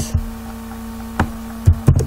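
Steady electrical hum on the recording, with a sharp click about a second in and a quick run of three clicks near the end from computer input as text is selected.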